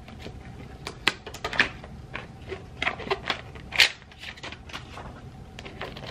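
Small cardboard gift box being opened and handled: a run of sharp clicks and taps with light rustling, the sharpest about four seconds in.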